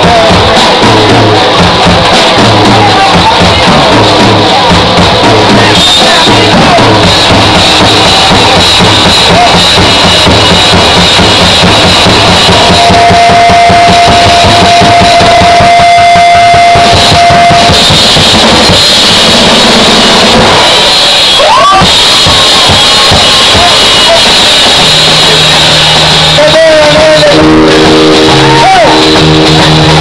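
A rock band playing live, with drum kit, bass and keyboard, recorded very loud, close to full scale. A single note is held for about five seconds in the middle.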